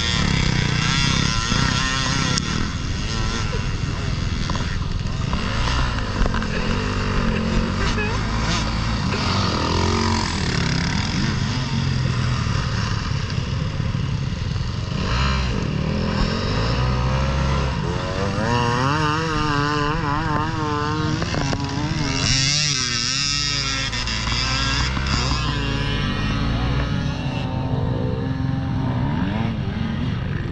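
Several enduro dirt bikes revving hard on a soaked, muddy hill climb, their engines climbing and dropping in pitch over and over as the riders fight for grip.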